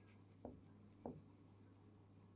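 Faint marker pen writing on a whiteboard, with a light scratchy rub and two soft taps of the pen about half a second and a second in.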